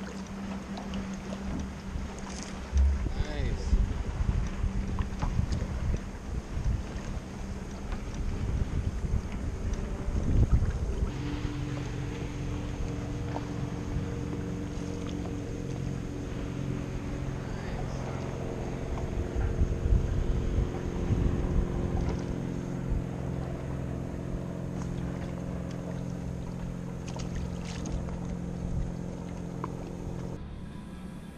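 A small boat's motor humming steadily, its pitch shifting a few times, with gusts of wind buffeting the microphone.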